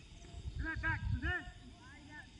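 Distant voices shouting across an open field: a few short, rising-and-falling calls in quick succession about half a second to a second and a half in, over a low rumble of wind on the microphone.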